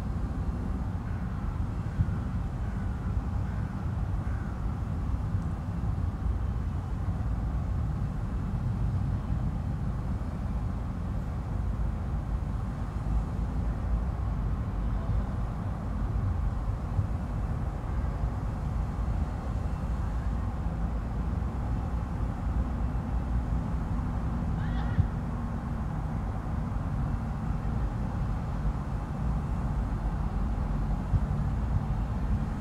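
Steady low rumble of background noise, with a faint short high call or squeak about 25 seconds in.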